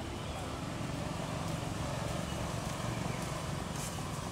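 Steady outdoor background noise with a low rumble and no distinct event standing out.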